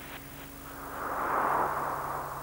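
A rushing whoosh of noise that swells to a peak about a second and a half in and then fades, over a steady low hum.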